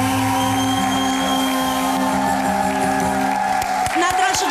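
A live band with electronic keyboards ends a song on a long held final chord, which stops about three seconds in. Audience cheering and clapping break out near the end.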